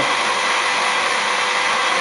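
Hurom slow juicer's motor running with a steady whir.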